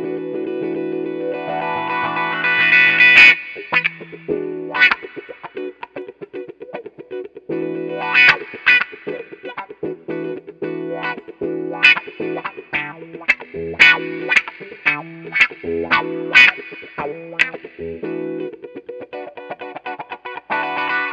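Electric guitar (Fender American Professional II Stratocaster HSS) played through an Xotic XW-2 wah pedal into a Fender '65 Twin Reverb amp. A held chord sweeps from dark to bright as the pedal is rocked forward over the first three seconds, then choppy, rhythmically strummed chords follow with the wah rocking.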